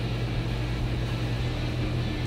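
Steady background machine noise: a constant low hum under an even hiss, with no distinct events.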